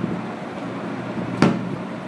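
A cardboard gift box being handled and turned over, with one sharp knock about one and a half seconds in, over a steady low hum.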